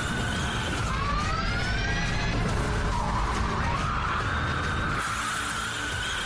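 A car drifting, its tyres squealing in long wavering tones, with the car's motor rising in pitch as it revs about a second in.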